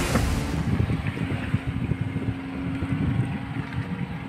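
Strong wind buffeting the microphone in gusts on a fishing boat at sea, over a faint steady motor hum from the boat. The tail of background music fades out in the first half second.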